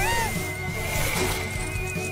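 Cartoon sound effect for a small flying UFO: a thin, high electronic tone that climbs slowly in pitch, opening with a quick upward swoop, over background music.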